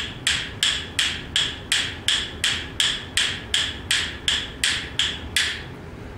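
A pair of yellow-pine rhythm bones held in one hand, clicking in a steady, even beat of about three clicks a second. The loosely held bone strikes the firmly held one on both the outward roll and the return roll of the wrist. The clicks stop shortly before the end.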